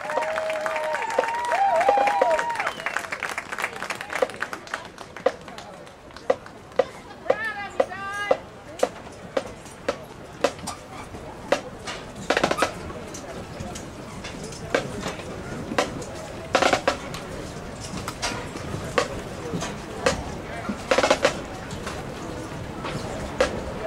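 Crowd cheering and chatter at first, then marching-band drums tapping a steady beat of about two clicks a second as the band marches off, with a few louder hits later on.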